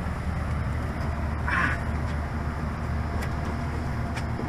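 Steady low hum of a police patrol car idling, heard from its rear seat, with a brief rustle about a second and a half in.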